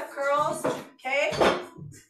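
Two sharp metallic clinks, about 0.7 s apart, of dumbbells knocking together as they are handled, under a voice.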